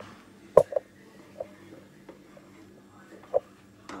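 Pot of thick tomato soup at the boil being stirred, with a few short pops and knocks; the loudest is a sharp knock about half a second in, with smaller ones after it and another near the end.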